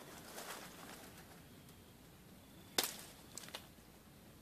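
A homemade PVC picking pole working in tree branches: a soft rustle of twigs and leaves, then a sharp snap about three seconds in, followed by two smaller clicks.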